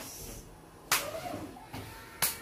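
A single sharp slap of hand against hand, about a second in, as palms meet in a hand-slapping game.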